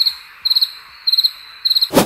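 Cricket-chirping sound effect: four short chirps about half a second apart over a faint hiss. It is the comic 'crickets' cue for an awkward silence after an awkward question. A brief, loud swish at the very end.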